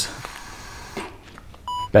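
A single short electronic beep of a hospital heart monitor near the end, one of a series coming about every two seconds, with a faint click about a second in.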